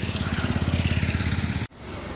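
A small engine running with a steady, low, fast-pulsing chug that stops abruptly near the end.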